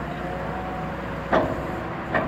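Wheel loader's diesel engine idling steadily, with one loud clunk about a second and a half in as the hydraulic snow plough blade is swung to a new angle.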